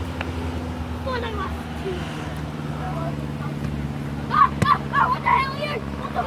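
Boys shouting and calling at a distance, a few scattered calls and then a louder run of shouts in the last two seconds. Under them runs a steady low hum.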